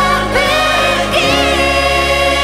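German Schlager pop music: sung vocals with vibrato over sustained bass and synth backing.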